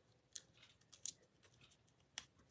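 Very faint handling of a layered paper card piece backed with adhesive foam dimensionals: a few short paper ticks and rustles, one about a third of a second in and two close together around one second.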